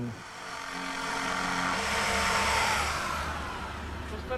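A motor vehicle passing by: its engine and tyre noise swells to a peak about halfway through, then fades away.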